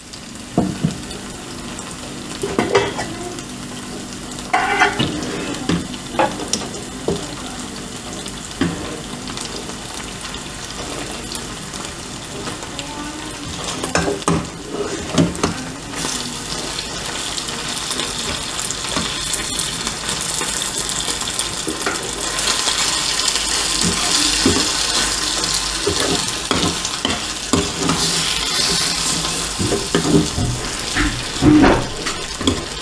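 A metal spoon scraping and knocking against stainless steel pots as cooked pasta is spooned into a pot of frying onions, with a sizzle from the pot that grows louder from about halfway through.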